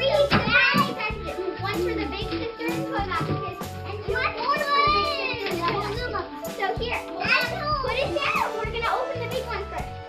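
Background music with a steady beat, with children's voices over it.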